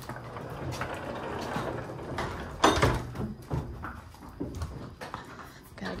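Horses moving about in wooden barn stalls: scuffing and knocking, with one loud bang a little before halfway through and a smaller knock about a second later.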